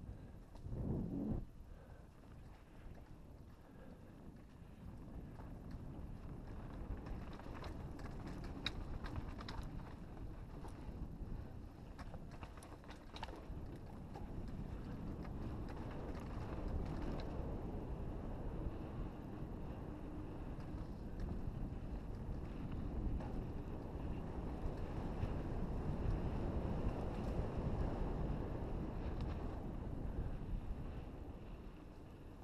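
Wind rushing over the microphone of a mountain bike's on-board camera, with the bike's tyres rolling over a dirt trail and scattered sharp clicks and rattles from about a third of the way in. The rumble grows louder toward the end.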